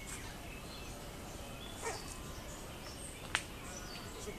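Outdoor ambience by open water with a steady low rumble of wind on the microphone. A short animal call comes about two seconds in, and a brief, sharper call near the end is the loudest sound.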